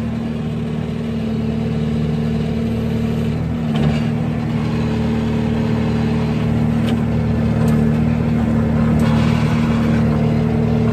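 Skid steer loader's engine running steadily as the bucket's hydraulics are worked. The engine note rises and grows louder about three and a half seconds in as the hydraulics take load, with a few light knocks later on.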